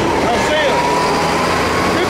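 Steady low rumble of road traffic, with faint voices of people talking under it.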